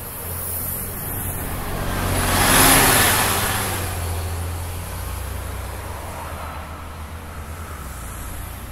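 A New Flyer D40LF transit bus with a Cummins ISL9 diesel engine pulling away from a stop and accelerating past, its engine drone and road noise swelling to their loudest about two and a half seconds in, then fading as it drives off.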